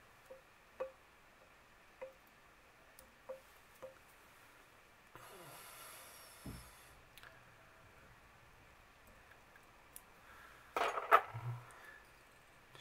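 Fine fly-tying scissors snipping waste material at the head of a fly in the vise: a few faint small clicks spaced a second or so apart, then a soft rustle. A louder short knock comes near the end.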